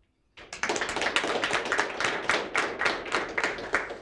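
An audience applauding at the close of a lecture. Many overlapping hand claps start about half a second in.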